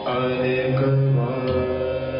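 Sikh Gurbani kirtan: a male voice singing a held devotional line over the steady drone of bowed dilruba-type string instruments, with tabla strokes.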